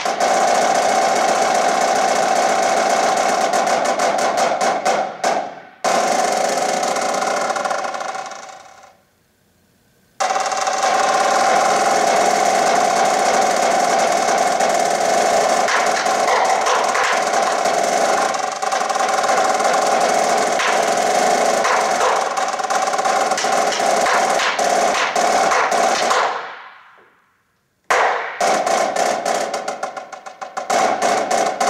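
Marching snare drum played solo with sticks: fast strokes and sustained rolls. The rolls fade away to silence twice, around nine seconds in and again near the end, and each time the drum comes back in suddenly loud.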